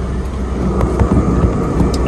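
Steady low hum of a car's engine running, heard inside the cabin, with a few light ticks about a second in and near the end.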